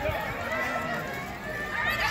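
Overlapping voices of a crowd of spectators, chatter mixed with drawn-out shouts of cheering.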